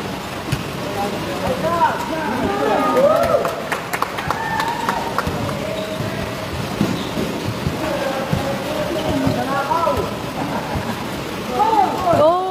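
Pickup basketball on an indoor court: players shouting and calling out at intervals, with scattered sharp knocks of the ball bouncing, over a steady background hiss.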